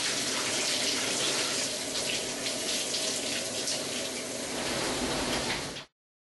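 Shower water running steadily, a continuous spraying hiss that cuts off suddenly near the end.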